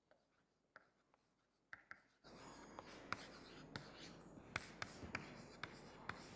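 Chalk writing on a blackboard. After about two seconds of near silence come faint scratching strokes, broken by many short taps of the chalk against the board.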